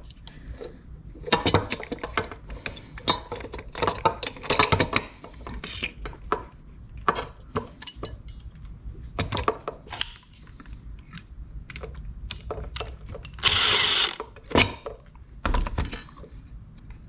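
Small metal and plastic parts of a B18C1 distributor clicking and rattling as hands unplug wiring connectors and pull out the ignition coil. A short, loud scraping burst comes about two-thirds of the way through, and a knock near the end.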